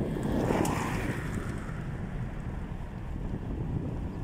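Wind buffeting the microphone as a steady low rumble, with a louder swell about half a second in.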